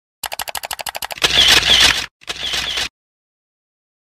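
Camera shutter sound effect: a rapid run of about a dozen shutter clicks in under a second, then two longer noisy bursts, the first the loudest, ending about three seconds in.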